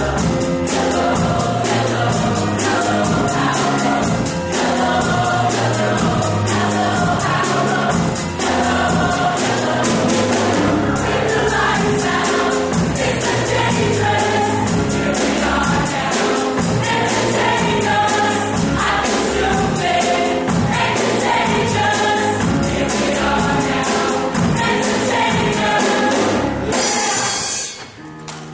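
A high school choir singing with accompaniment over a steady beat.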